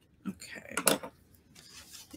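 Paper being handled and rubbed on a wooden tabletop, a short scratchy rustle with one sharp tap just under a second in.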